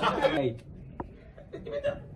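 A person's voice with chuckling that trails off in the first half-second, then a quiet stretch broken by a single sharp click about a second in.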